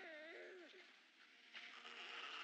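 A newborn baby's short, faint, wavering whimper in the first half-second or so.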